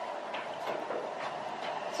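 Steady mechanical hum with a few faint ticks.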